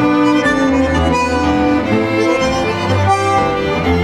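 Tango sextet playing: bandoneon with two violins, cello, double bass and piano, in sustained notes over a steady bass line.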